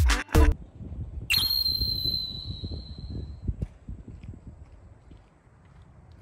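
A short laugh, then about a second in a sudden high-pitched steady tone, like a whistle or an edited sound effect, that fades away over about two seconds; faint background noise follows.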